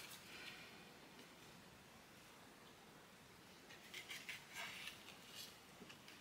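Near silence, broken about four seconds in by a few faint, short rustles of paper ephemera pieces being handled and laid onto a journal card.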